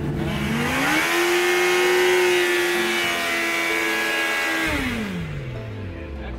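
2021 Suzuki Hayabusa's inline-four engine revved hard during a burnout, its rear tyre spinning. The revs climb quickly in the first second, hold steady at a high pitch for about four seconds, then drop away near the end.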